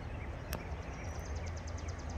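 Quiet outdoor ambience: a low steady hum, with a faint, high, rapid chirping trill of about nine notes a second starting about half a second in.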